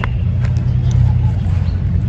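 A steady low rumble runs throughout, with a couple of light knocks as dried cow-dung cakes are handled and stood upright.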